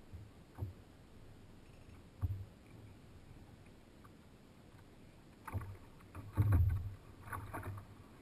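Dull knocks and bumps on a plastic sit-on-top kayak's hull, coming every second or two, with the loudest about six and a half seconds in and a few lighter rattles near the end.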